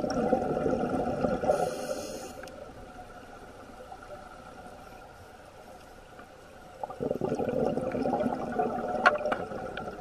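Scuba diver's exhaled breath bubbling out of the regulator: one burst of bubbles lasting about two seconds, a quieter stretch, then another burst from about seven seconds in, with a sharp click near the end.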